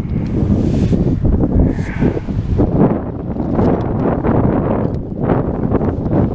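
Wind buffeting an action camera's microphone: a loud, gusting low rumble, with a short higher sound about two seconds in.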